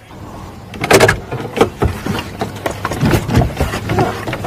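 A car door and the car's body being handled: a run of irregular knocks and clicks begins about a second in, over a low steady hum.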